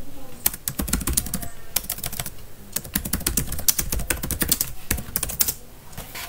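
Typing on a computer keyboard: runs of quick keystrokes with a short pause a little over two seconds in, stopping shortly before the end.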